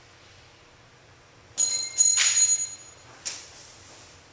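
Steel spike nail dropped from six feet hitting a hard floor: a sharp ringing metallic clink about a second and a half in, a louder second strike as it bounces and clatters for under a second, then one last short clink.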